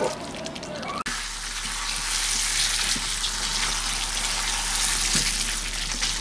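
Pre-fried potato chunks sizzling in oil and spice paste in a wok as they are stirred and sautéed in the masala, a steady sizzle from about a second in.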